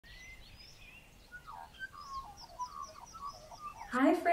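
Birds chirping and warbling quietly: a run of short chirps and gliding whistled notes, a few each second.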